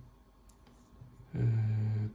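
Faint clicks of fingers handling a bronze halfpenny coin, then a man's long, steady 'eh' hesitation starting a little before the end.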